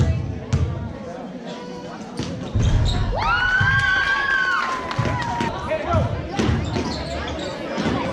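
A basketball is dribbled, bouncing repeatedly on a hardwood gym floor, with players' footfalls. About three seconds in, a long, high-pitched, held tone sounds for about two seconds.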